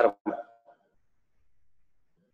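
A brief word of a man's speech over a video call, then near silence.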